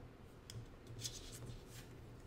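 Faint sounds of a paintbrush working watercolour paint in a palette: a light tap about half a second in, then a few short scratchy strokes of the bristles.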